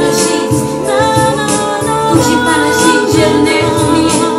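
Music: a woman singing an improvised Christian worship song in Czech over a backing melody.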